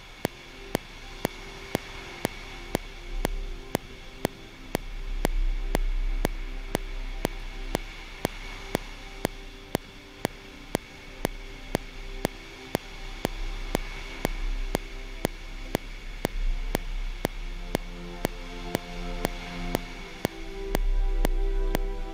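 Slow, sustained chords from a software orchestral patch played live on a small MIDI keyboard, growing fuller and louder near the end. A steady metronome click ticks about two and a half times a second throughout, over a constant hiss and low rumble of surf and wind.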